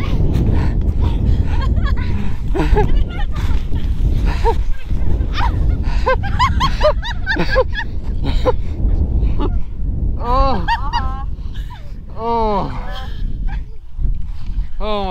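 People laughing and crying out in high, wavering voices over a steady rumble of wind on the microphone, with the loudest cries in the last few seconds.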